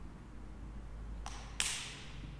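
Two sharp taps about a third of a second apart, the second louder and ringing briefly: vessels being set down or knocked together on the altar, over a low steady hum.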